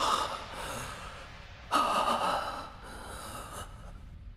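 Heavy breathing from an armoured character: two long breaths, the first at the start and the second beginning a little under two seconds in and lasting about two seconds.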